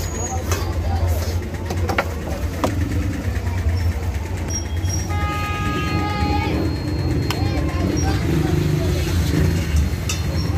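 Busy roadside ambience: a constant low traffic rumble and background voices. A vehicle horn sounds for about a second and a half around the middle. A few sharp clicks come from a metal knife and utensils against a steel griddle.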